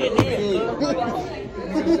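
Chatter of several people talking over one another, with a single brief knock about a quarter second in.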